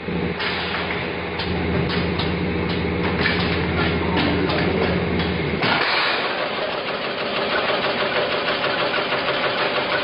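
Automatic coffee capsule bagging machine running: repeated mechanical clacks over a low, steady hum. The hum cuts off a little past halfway, and a faster, denser rattle carries on.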